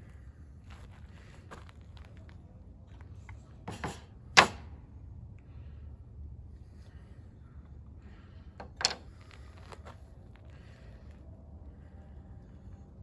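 Two sharp knocks of objects set down or struck on a work table, the first and loudest about four seconds in and the second about four seconds later, each just after a softer knock, with faint rustling of handling in between.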